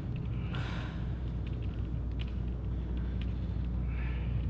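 A steady low rumble of room noise, with a couple of short breathy hisses from hard breathing, about half a second in and again about two seconds in.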